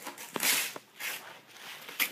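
Wrapping paper rustling and tearing in short bursts as a wrapped gift box is pulled open by hand, with a few sharp crackles.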